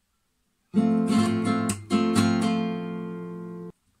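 Classical guitar playing an F chord with a rasgueado strum: a quick run of fanned finger strokes starting about a second in, then the chord rings on and is damped suddenly near the end.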